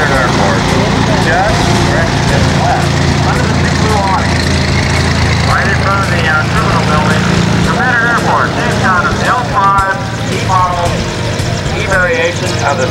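Piston engine and propeller of a single-engine Cessna high-wing light plane taxiing past at low power, a steady low drone that eases off after about eight seconds. Voices talk over it.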